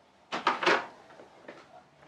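Handling noise: three quick rustling clicks in the first second as a small woodcut tool is taken from a cloth tool bag and handled, then only faint handling.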